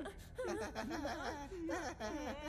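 A cartoon character's voice whimpering and wailing in a wavering, whiny pitch, quieter than the laughter at the microphone just before it.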